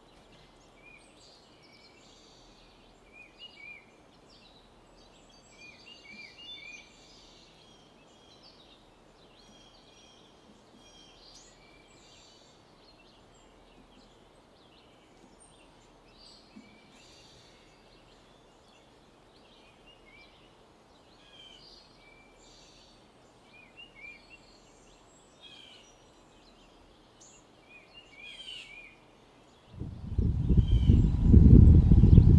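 Several birds calling faintly, with short chirps and quick runs of notes scattered throughout, over a steady low background hiss of open-air ambience.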